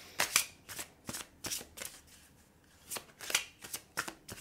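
A deck of oracle cards being shuffled by hand: quick, crisp shuffling strokes in short runs, with a pause of about a second around two seconds in.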